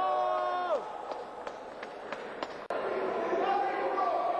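A man's long shouted call, held level and then dropping off about three-quarters of a second in. A quieter stretch follows with a few sharp clicks and knocks, then voices rise again in the second half.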